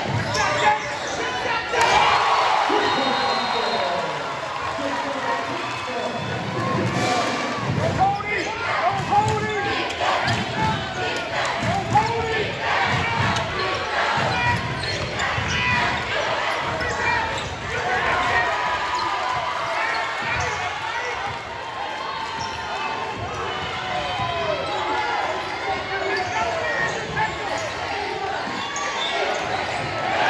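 Basketball game play: a ball bouncing on the court again and again, under the voices of players and crowd.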